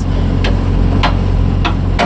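Semi tractor's diesel engine idling with a steady low drone, and three sharp ticks evenly spaced a little over half a second apart.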